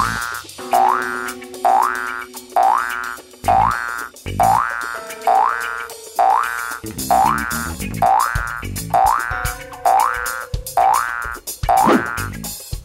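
Cartoon spring "boing" sound effect repeating about once a second, a short rising twang for each hop of the shroud-wrapped pocong ghost, over background music with held notes.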